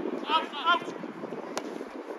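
Two short shouts from players, then, about one and a half seconds in, a single sharp kick of a football: a shot on goal.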